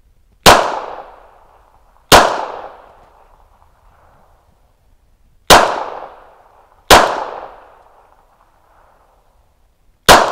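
Four shots from a 9mm Glock pistol, fired as two unhurried pairs: two shots about a second and a half apart, a pause of about three seconds, then two more. Each shot is loud and rings out in a decaying echo. Each pair is two rounds on one target circle in a slow, untimed fundamentals drill.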